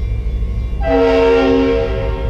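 A train horn sounding one chord of several steady tones for about a second, starting a little before the middle, over a steady low rumble.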